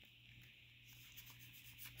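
Near silence, with faint rubbing of a stack of Pokémon trading cards being handled, the cards slid from the front of the pack to the back.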